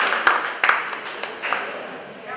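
Audience applause dying away into a few scattered hand claps.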